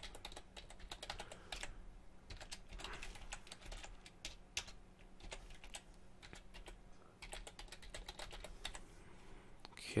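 Faint computer-keyboard typing: runs of quick keystroke clicks with short pauses between them.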